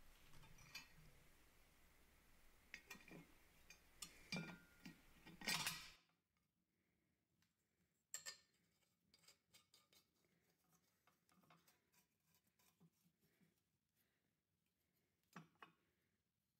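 Mostly near silence, with scattered faint clicks and taps of steel parts being handled and fitted together, a few slightly louder near eight seconds in and near the end.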